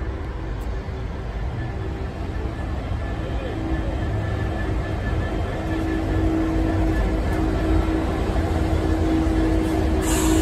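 Colas Class 66 diesel locomotive arriving, its EMD two-stroke V12 engine running with a steady hum. The sound grows gradually louder as the locomotive draws near and comes alongside.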